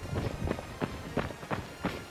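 Running footsteps on a dirt trail: trail-running shoes striking the ground at a steady running pace, about three steps a second.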